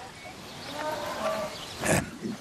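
A person's voice without words: a faint murmur, then a short, loud, breathy exhale like a sigh near the end.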